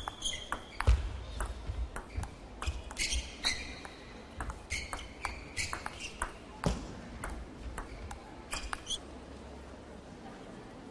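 Table tennis rally: the ball clicking off the bats and the table in quick alternation, with short squeaks from the players' shoes on the court floor. The ball strikes stop about nine seconds in, when the point ends.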